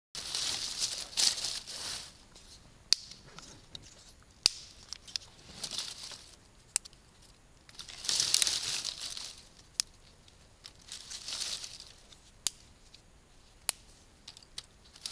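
Dry leaves and twigs rustling and crackling in bursts as they are gathered and moved by hand on a forest floor, with about six short sharp clicks of twigs in between.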